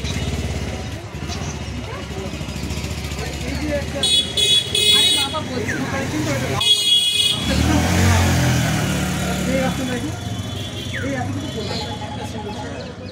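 Street traffic: a motorcycle engine running past with a low rumble. Two short high-pitched horn toots sound about four and seven seconds in, over background chatter.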